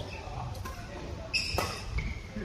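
Badminton rally in a large sports hall: sharp racket strikes on the shuttlecock, with the strongest strike about a second and a half in carrying a brief high ringing squeak.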